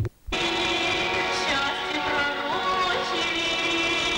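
A woman singing into a microphone over instrumental accompaniment, holding long notes. The song cuts in about a third of a second in, after a brief dip in sound.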